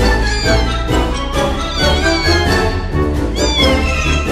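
Background music, with a one-month-old Persian kitten's high meows heard over it a few times, each call rising and then falling.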